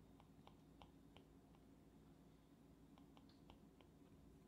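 Faint, irregular light taps of an Apple Pencil's plastic tip on the iPad's glass screen, about a dozen over a few seconds, as short strokes are dabbed on. Under them, near-silent room hum.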